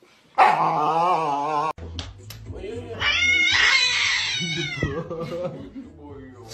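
A Siberian husky howls with a wavering pitch for about a second, and the sound cuts off abruptly. Then a cat gives a long, high meowing call over a low hum.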